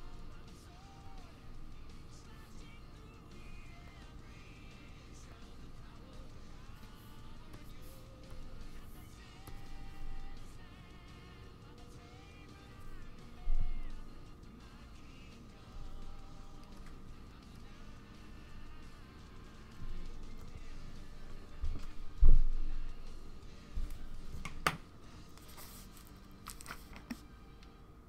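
Soft background music with a faint melody under the stream. A few low thumps cut through it, the loudest about 22 seconds in, with a sharp click shortly after.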